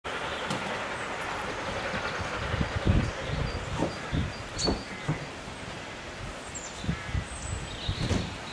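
Distant A4 Pacific steam locomotive working toward the station, heard faintly under irregular gusts of wind buffeting the microphone, which are the loudest sounds; birds chirp now and then.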